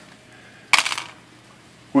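Pieces of a broken hard plastic knife, one with melded-in paper clip reinforcement, dropped onto a tabletop: a brief light clatter of several quick clicks about three quarters of a second in.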